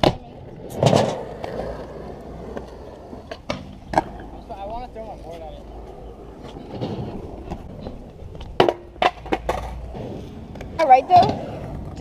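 Skateboard wheels rolling on concrete, with sharp clacks and knocks of the board hitting the ground: a heavy one about a second in and a quick cluster of three near the end.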